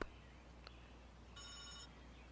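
A telephone bell ringing: one short ring about one and a half seconds in, lasting about half a second.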